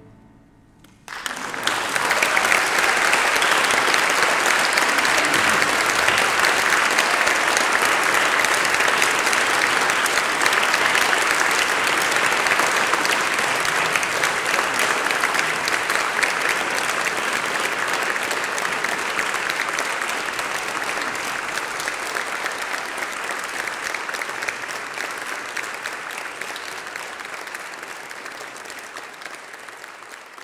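Audience applause breaking out about a second in after a brief silence, holding steady for a long stretch, then slowly thinning out toward the end.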